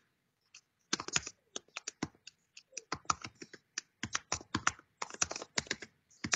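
Typing on a computer keyboard: a quick, irregular run of short key clicks, starting about a second in and going on in bursts until near the end.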